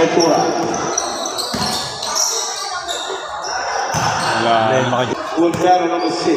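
A basketball being dribbled on a hard court, a few separate bounces, with men's voices calling out over it.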